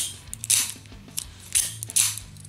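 An out-the-front (OTF) automatic knife's spring-driven blade snapping in and out of its handle, a few short, sharp clicks.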